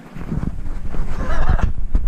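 Low rumbling handling and wind noise on an action camera's microphone as the camera is moved about, growing louder. A brief high-pitched voice sounds about a second in.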